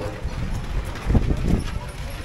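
Hooves of a pair of draft horses clip-clopping on a paved street as they pull a buckboard wagon, with a couple of louder knocks about halfway through.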